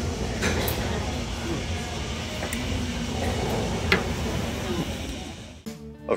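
Restaurant patio ambience: faint conversation of other diners over a steady background hum, with a few light clicks.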